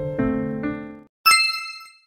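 Soft piano music plays a few notes and stops about a second in. After a short gap a single bright ding rings out and fades away, a transition chime.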